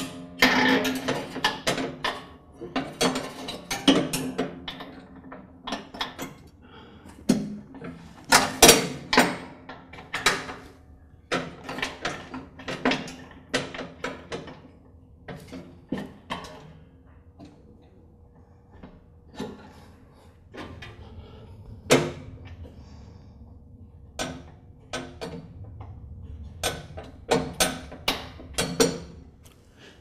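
Irregular metal clicks, clinks and knocks of a lawn tractor's PTO cable, its spring and cable end being handled and hooked back onto the mower-deck bracket, some in quick clusters with quieter stretches between.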